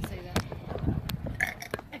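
A person burping.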